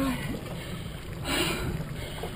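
Small outboard kicker motor running steadily, a low even rumble with wind and water noise around the boat; a short rush of noise comes a little past halfway.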